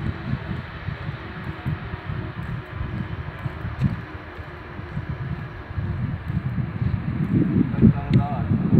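Wind buffeting a phone microphone outdoors: an irregular low rumble that rises and falls in gusts and grows louder near the end.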